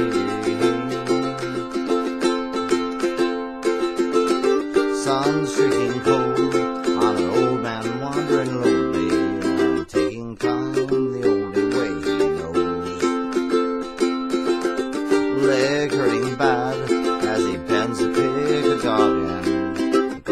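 Ukulele strummed steadily in full chords, a solo acoustic accompaniment with a regular rhythm.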